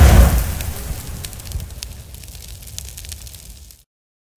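Produced intro sound effect: a deep explosive boom at the start that dies away over a few seconds into scattered crackling, like a fireball, then cuts off abruptly shortly before the end.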